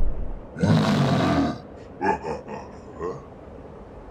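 A voiced creature roar for a cartoon yeti, rough and lasting about a second, followed by three short grunts.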